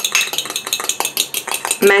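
A metal utensil beating egg in a small ceramic bowl, giving a rapid, continuous clicking against the bowl as the egg wash is whisked.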